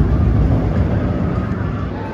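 Inverted steel roller coaster train running past on its track, a loud, low rumble from its wheels on the rails.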